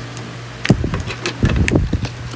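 Handling knocks on a plastic blender jar loaded with fruit: one sharp knock, then a quick run of bumps and rattles near the end, over a steady low hum.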